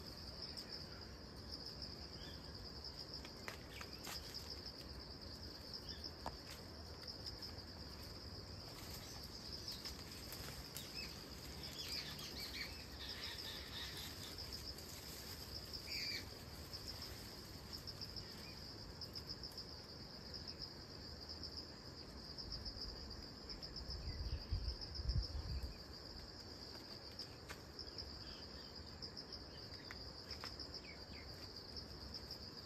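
A steady, high-pitched chorus of insects chirping in a fast pulsing trill, with a few faint chirps in the middle. Near the end there is a brief low rumble.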